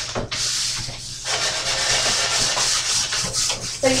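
A wet towel scrubbing the rusty, flaking outside of a 1917 clawfoot porcelain tub, a steady scratchy rubbing with a short pause about a second in, as loose rust and paint are worked off to prepare the surface for painting.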